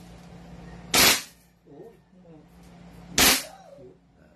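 BLK M4A1 toy blaster rifle fired twice in single shots on semi-auto: two sharp cracks about two seconds apart, one about a second in and one near the end.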